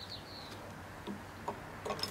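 Three faint, small clicks of a screwdriver working out the screw that holds a lawn mower's fuel shut-off valve to its mounting plate, over a low steady hum.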